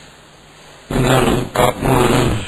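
A short pause with faint background hiss, then a man's voice speaking in broken phrases from about a second in.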